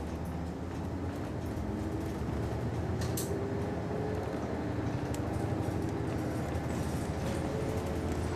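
City bus diesel engine heard from inside the cabin, accelerating away from a stop: its note climbs, drops at a gear change and climbs again, over a steady rumble and road noise. A sharp click sounds about three seconds in.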